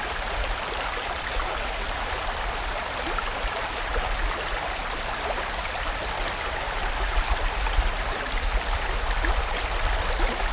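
Mountain stream rushing steadily, a continuous wash of water noise with a deep rumble underneath, turning a little more uneven and splashy in the last few seconds.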